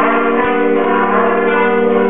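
Alto saxophone and brass quintet playing sustained, full chords.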